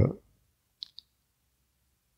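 The end of a man's drawn-out "uh", then two faint, short mouth clicks about a second in, a split second apart, picked up close to the microphone; otherwise only quiet room tone.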